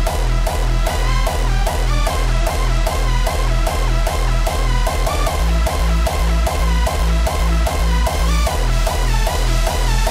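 Hardstyle track playing back: the second drop, with a heavy kick drum hitting on every beat under a synth melody.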